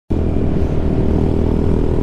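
Honda Ruckus 49cc scooter's four-stroke single-cylinder engine running steadily while cruising, its pitch holding even.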